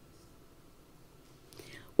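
A quiet pause in a woman's speech: faint room tone with a low steady hum, then a soft breath-like sound in the last half-second as she starts to speak again.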